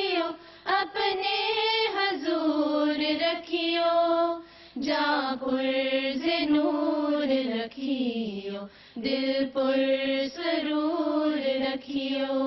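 A single female voice chanting an Urdu devotional poem (nazm) without accompaniment, in slow melodic phrases with held, gliding notes and short pauses for breath between lines.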